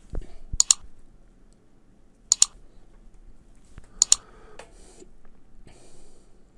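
Fingers pressing and tapping a SoundPEATS Watch 2 smartwatch on the wrist: three pairs of sharp clicks about a second and a half apart, with a few soft handling bumps near the start.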